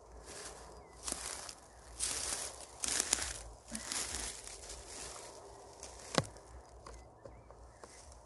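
Blue vinyl tape being pulled off its roll and wrapped around a birch trunk, in about four short rasping pulls in the first half, with one sharp click later on.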